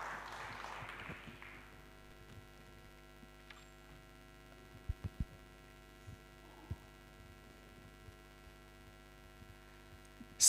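Applause dying away in the first second or so, leaving a steady electrical mains hum from the sound system, with a few faint knocks about halfway through.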